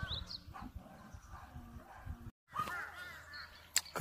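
Faint bird calls, a few short pitched calls scattered through the quiet, with one sharp click near the end.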